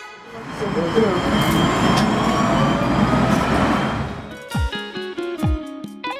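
Tram at a platform: a steady rumble with voices mixed in. About four seconds in, music takes over with plucked guitar and regular bass-drum hits.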